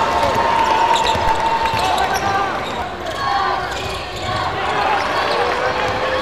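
Basketball game court sound: a ball dribbled on a hardwood floor, with players' and spectators' voices echoing in the arena.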